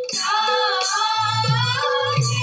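A group of female voices singing an Assamese Borgeet in unison, with harmonium, a khol drum and taal hand cymbals. The cymbal strikes ring out near the start, and the deep khol strokes come in the second half.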